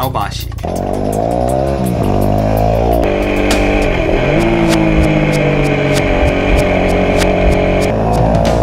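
Dual-sport motorcycle engine heard up close from the chassis while riding, its revs dipping and climbing again twice as the rider works the throttle and gears, with music playing over it.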